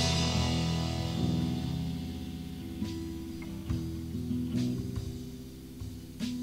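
Rock band music on electric guitar, bass and drums: a loud passage dies away at the start, leaving low sustained notes with a few sparse, sharp accents near the middle.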